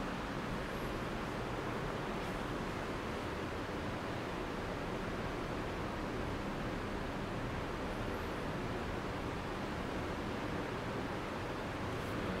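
Steady, even hiss of room noise with no distinct events: the background of a quiet lecture room.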